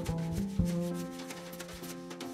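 Jazz piano trio playing a soft passage: sustained piano and bass notes over a swishing, rubbing sound of wire brushes on the snare drum, with a few light drum taps.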